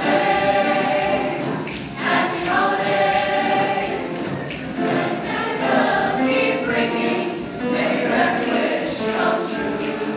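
Mixed show choir of male and female voices singing in harmony, in phrases of held chords that change every second or two.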